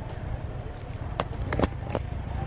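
Wind buffeting the microphone as an uneven low rumble, with a few sharp clicks from the camera being handled and swung round about a second and a half in.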